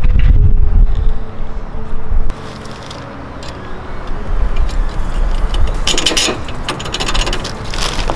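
DeWalt cordless drill boring into a Jeep roll bar, stopping suddenly about two seconds in. After that, quieter clicks and scraping of a hand tool working the metal fire-extinguisher mount, busiest near the end.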